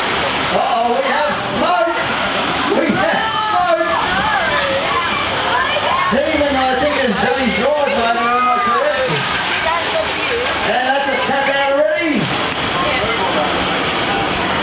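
Several people talking and calling out at once, with no clear words, over a steady rushing noise.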